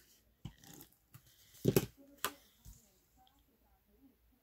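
Faint handling sounds of paper crafting: a plastic glue tape runner applying adhesive to a small paper piece, then a few light knocks and clicks as the dispenser is set down and the paper is pressed onto the planner page, the loudest knock a little under two seconds in.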